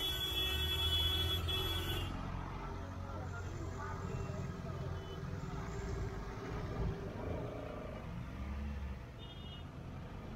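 Congested street traffic, with engines running at low speed as a steady rumble. A high, steady horn-like tone sounds through the first two seconds and cuts off, and a short high beep sounds near the end.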